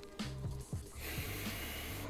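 A person breathes through the nose while holding a glass of bourbon up to the face, nosing and sipping it. There is a soft hiss of breath for about the last second.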